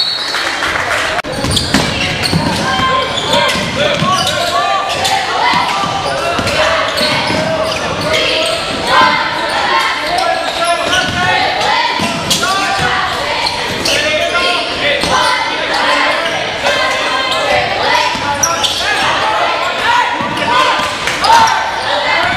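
Basketball game in a school gym: many players', coaches' and spectators' voices calling and talking over one another, with a basketball bouncing on the hardwood as it is dribbled, all echoing in the hall.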